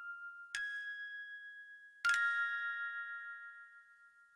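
Closing notes of a music-box-style instrumental: a single high note about half a second in, then a final chord about two seconds in that rings on and slowly fades away.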